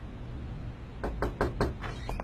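A quick run of knocks on a door, starting about a second in.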